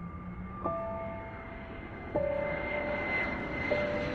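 Jet airliner flying overhead: a steady rushing engine noise with a high whine, growing louder. Three soft sustained notes of background music sound over it, about a second and a half apart.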